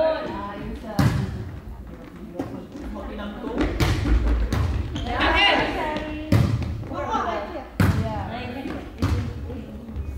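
Volleyball rally in a gymnasium: the ball is struck by players' hands several times, each hit a sharp slap that rings in the hall, with players' voices calling out between the hits.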